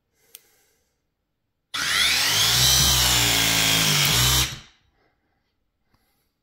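Milwaukee M18 Force Logic ProPress tool with a Ridgid V1 ring actuator pressing a copper fitting: a light click, then about a second later the motor runs for roughly three seconds, its pitch sagging and recovering under load, and stops abruptly. A full press cycle, quick, that leaves the fitting pressed.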